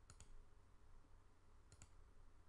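Two faint computer mouse clicks about a second and a half apart, each a quick press-and-release double tick, as OK buttons are clicked to close settings dialogs.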